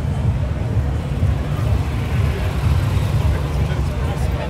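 Outdoor street-crowd ambience: a steady low rumble under a faint babble of many voices.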